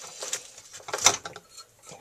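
Soldering iron being set down into its coiled metal spring stand: a few light metallic clinks and scrapes, the sharpest about a second in.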